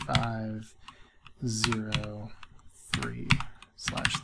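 Typing on a computer keyboard: short runs of key clicks as an IP address is entered.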